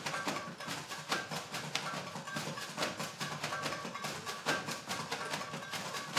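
Plastic bags and wrappers being shaken, swung and crumpled by several people at once: a dense, irregular rustling and crackling with sharp crinkles.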